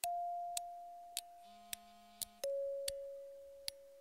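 Quiet synthesized intro sound effect: a steady electronic tone that slowly fades, then a second, lower tone about halfway through, with a brief buzzy tone in between and several soft ticks scattered over the top.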